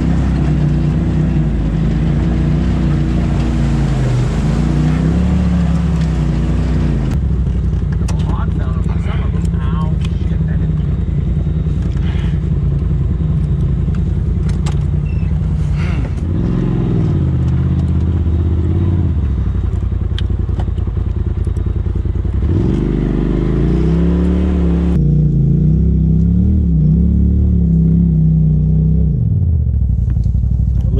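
Side-by-side UTV engines driving a rough trail, the engine pitch rising and falling again and again as the throttle is worked. Scattered knocks and clatter come from the rocky ground.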